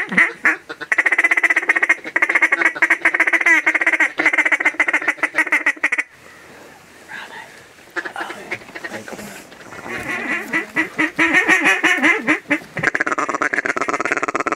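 Hunter's duck call blown close by in long runs of rapid quacks, with a break of about two seconds midway before the calling resumes.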